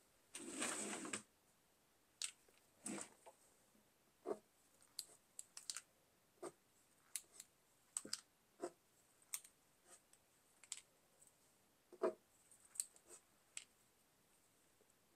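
Faint sounds of a Posca paint marker worked on a canvas collage: one short scratchy stroke about half a second in, then a string of small irregular taps and clicks as the nib is dabbed onto the surface.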